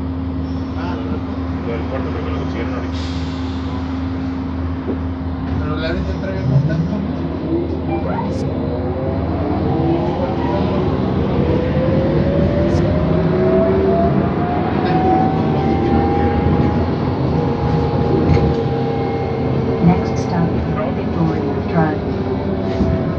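Inside a city bus: a steady hum at first, then from about eight seconds in a whine from the drive rises smoothly in pitch over several seconds as the bus gathers speed, and levels off near the end.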